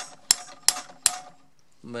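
Hammer tapping on a steel socket that is driving a gear down into a KitchenAid stand mixer's gear housing. There are three or four sharp metallic taps about a third of a second apart, and then they stop.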